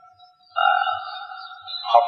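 A steady pitched tone, held level for just over a second after a brief near-silent pause.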